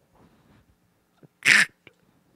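A man stifling laughter close to a microphone: faint breathy sounds, then one short, sharp burst of laughing breath about a second and a half in.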